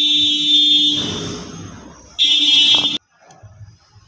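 Loud electric buzzer tone that stops about a second in and fades away, then a second, shorter buzz a little over two seconds in that cuts off suddenly.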